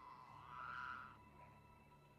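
Very quiet trailer sound design: the faint, fading tail of a ringing tone over a low hum, with a soft airy swell that rises and dies away within the first second.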